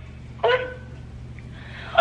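One short spoken exclamation, "what?", about half a second in, then only a steady low hum.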